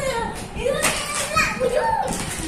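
A small child's high-pitched voice in short, excited calls and chatter.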